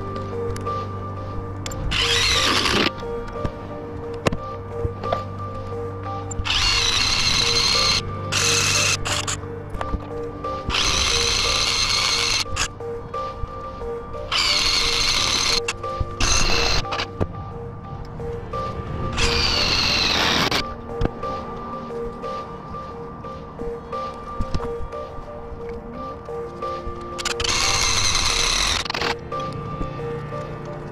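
Milwaukee M18 cordless drill running in about eight short bursts of one to two seconds each, its motor whine sliding up and down in pitch at some starts and stops, over steady background music.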